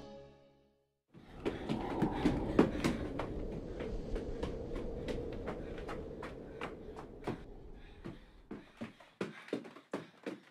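Sound of the previous scene fading out into a brief silence, then low sustained background music with quick footsteps on a stone floor over it. The steps come irregularly and grow sparser near the end.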